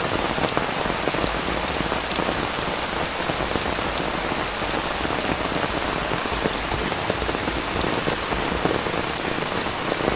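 Heavy rain falling steadily on foliage and a wet paved path, a dense, even patter of drops.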